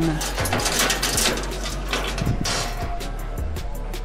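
Steel flat bars scraping and clinking against neighbouring bars as they are pulled and shifted in a metal stock rack, several short strokes, over a steady low hum and faint background music.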